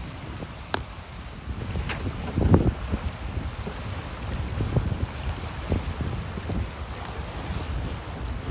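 Wind buffeting the microphone beside a choppy lake, with waves lapping. A few short knocks and thumps break through, the loudest about two and a half seconds in.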